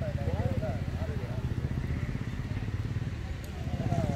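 A motorcycle engine idling close by, a steady low rumble of rapid pulses, with distant voices calling out over it.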